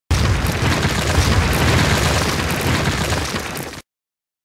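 Intro sound effect: a loud, rumbling boom-like noise with heavy bass that fades slightly and cuts off suddenly shortly before the logo appears.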